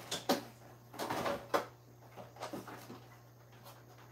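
Rummaging through plastic storage boxes of wooden rubber stamps: a few sharp plastic knocks and clatters in the first second and a half, then softer rustling and handling.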